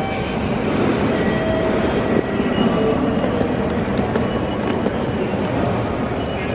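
Steady, loud, echoing din of a busy railway station hall: indistinct crowd noise with a few sharp clicks and short faint tones.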